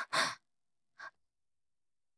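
A person's short, sharp breath, like a gasp or sigh, right at the start, then a fainter short breath about a second in.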